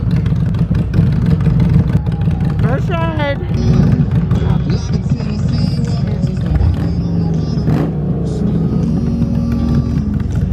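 V-twin motorcycle engine idling with a steady, dense low rumble. A brief rising high-pitched call sounds about three seconds in.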